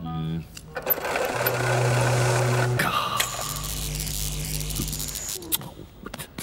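Cartoon electrical buzzing from a hand-cranked electrostatic generator with a metal dome: a dense buzz with a steady low hum for a couple of seconds, then a falling whistle and a second, deeper buzz that stops about five seconds in.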